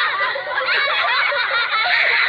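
Many overlapping high voices laughing and giggling together, a recorded laughter track playing over a Nickelodeon lightbulb end logo.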